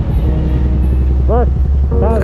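Steady low rumble of vehicle engines in street traffic, with a minibus passing close by. A single short voice note rises and falls about one and a half seconds in.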